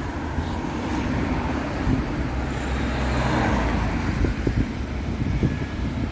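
Road traffic going by, the noise of a passing vehicle swelling to a peak about halfway through over a steady low rumble.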